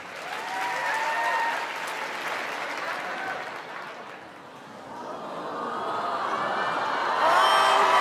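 Studio audience applauding, with scattered voices calling out over it; the applause dips about halfway through, then builds and is loudest near the end.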